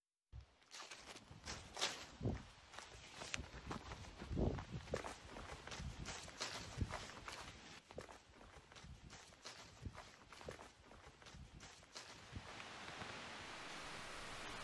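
Faint, irregular footsteps crunching through dry leaf litter and twigs. They give way to a steady hiss shortly before the end.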